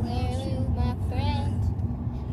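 Steady low rumble of a moving vehicle, with high voices singing over it.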